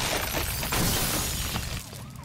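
Glass shattering and a structure crashing amid a fire, the sound effect of a burning shed, fading out near the end.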